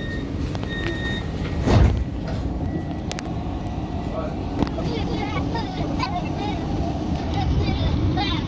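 Tram door warning beeps, a short series of high electronic tones, at the start. About two seconds in comes a single loud low thump, then steady street and traffic noise with faint voices.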